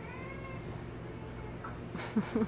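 A dog whining in high, gliding whimpers, strongest in the first half second, with fainter whimpers after.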